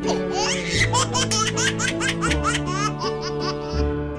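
A baby laughing in a run of quick giggles, over light background music.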